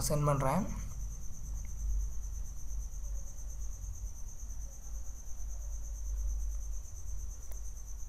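Background noise: a steady high-pitched trill with a low hum underneath, following a brief bit of speech.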